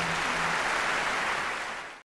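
Audience applauding as the last held note of the music dies away about half a second in; the applause fades out near the end.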